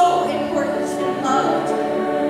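Large school choir singing sustained chords, with a brief hiss of sung consonants about a second in.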